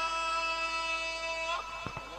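A man's amplified voice holding one long, steady note of Quran recitation, a drawn-out vowel, which ends about one and a half seconds in. Two short knocks follow near the end.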